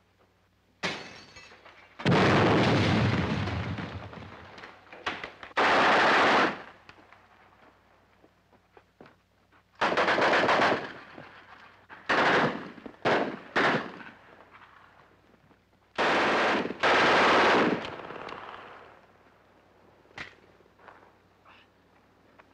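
Bursts of automatic gunfire as a film sound effect: about eight bursts of half a second to two seconds each, separated by short quiet gaps. The first long burst trails off over a couple of seconds.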